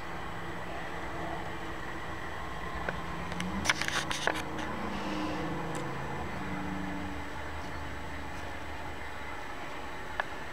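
Felt-tip marker drawing on paper, faint against a steady background hum, with a quick run of small taps and clicks about four seconds in.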